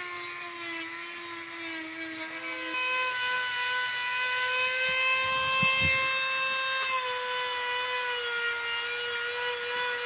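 Dremel rotary tool with a small sanding drum running with a steady whine while it grinds and shapes a model pistol grip. About three seconds in the pitch jumps up and the sound gets louder, and it shifts again around seven seconds as the drum's contact with the grip changes.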